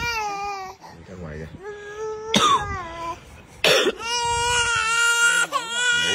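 A baby crying hard: three long wailing cries, the last held for about a second and a half, broken in the middle by two short harsh bursts of breath.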